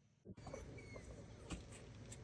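Faint outdoor background noise that begins suddenly after a brief silence, with a couple of soft clicks and a short faint high chirp.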